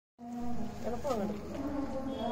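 A steady buzzing hum, with Rottweiler puppies giving a few short falling whines about a second in.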